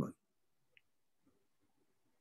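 The last word of a man's speech cutting off at the start, then near silence: room tone, with one faint small click a little under a second in.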